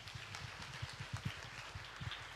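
Audience applause, with an irregular run of low thuds mixed in.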